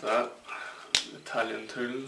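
A man's voice talking, with one sharp snap about a second in, from the plastic packaging of a small plastering trowel being handled and opened.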